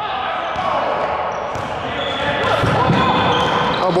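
A basketball being dribbled on a gym's hardwood court during a pickup game, with players' voices and movement in the background of the hall.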